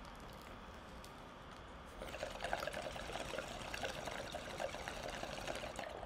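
Water bubbling in a bong as smoke is drawn through it. It is faint for the first couple of seconds, then becomes a rapid, continuous gurgle about two seconds in.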